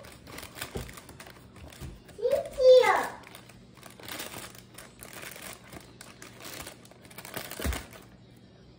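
Thin plastic bag of brownie mix crinkling as it is handled and cut open with scissors, with a short gliding vocal sound about two to three seconds in and a dull thump near the end.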